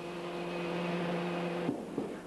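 Steady hydraulic hum with one low tone, from a Boeing 747's landing-gear system as the gear doors close during a retraction test on jacks; it cuts off suddenly near the end.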